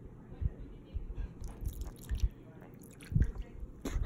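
A few soft, scattered taps and thumps over a low background hiss, the clearest about three seconds in.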